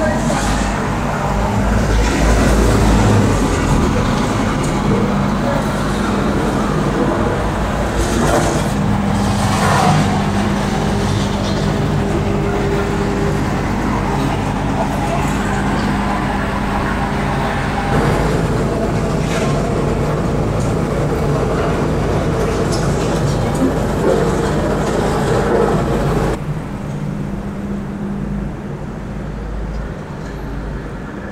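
Heavy demolition machinery running steadily with a droning hum, mixed with street traffic noise; the noise drops suddenly near the end.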